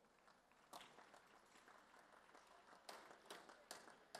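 Faint, scattered hand clapping, a single clap about a second in and a few more near the end, over near silence.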